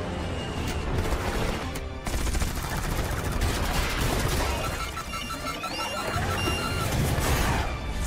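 Aircraft cannon fire tearing into a stealth jet, with rapid volleys and metal debris impacts, mixed over a film score. A row of quick, evenly spaced beeps sounds in the middle of the passage.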